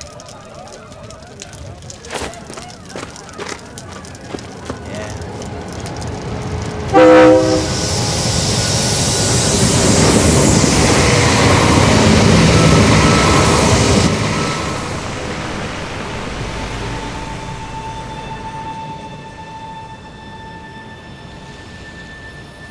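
A passenger train passing: a short, loud horn blast about seven seconds in, then the train's rushing rumble builds, peaks and fades away over the next dozen seconds.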